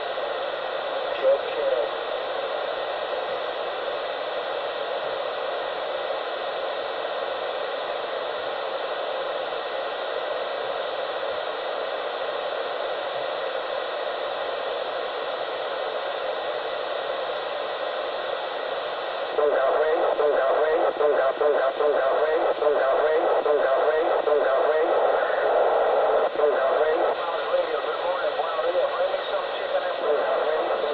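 Steady thin, muffled hiss like radio or phone-line static. About two-thirds of the way in it gets louder, with garbled, unintelligible voices in it.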